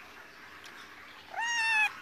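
A black-and-white kitten meowing once, a single short call about half a second long near the end that rises in pitch at its start and then holds.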